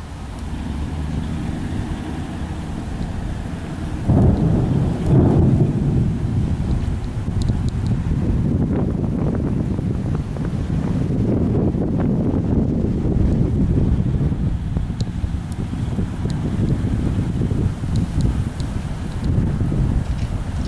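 Strong thunderstorm wind gusting across the microphone: a low, rumbling rush that grows louder about four seconds in and keeps surging and easing.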